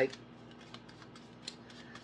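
Tarot cards being handled: a few faint, light clicks and snaps, spaced apart, over a low steady hum.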